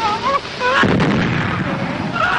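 Battle sound effects on an early sound-film soundtrack: short wavering high-pitched sounds, then an artillery shell explosion bursts in just under a second in and rumbles on.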